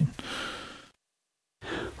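A person's soft breath that fades away within the first second, then a dead-silent gap, then a short breath near the end, just before speech resumes.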